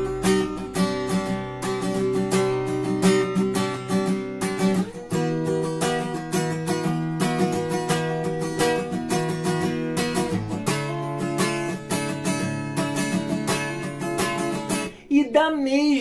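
Acoustic guitar strumming minor chords alternating with their sus9 chords, with the harmony shifting to a new root about five seconds in and again near eleven seconds; the sus9 voicings drop the third and add the ninth, so they sit over the minor chord.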